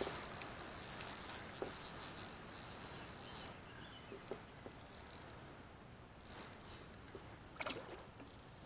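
Spinning reel cranked in spurts while a hooked fish is played, a faint high whirr that runs for the first few seconds, stops, and comes back briefly later. Faint water sounds and a few small ticks run underneath, with a brief louder sound near the end.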